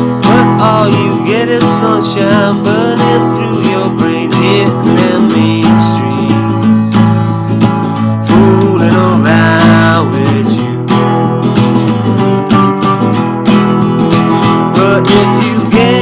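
Acoustic guitar strumming chords steadily, with sliding, bending notes above the chords.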